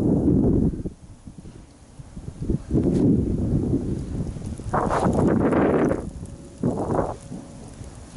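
Loose tin sheets rattling and rumbling in the wind, in two louder bursts about five and seven seconds in, over gusts of wind buffeting the microphone.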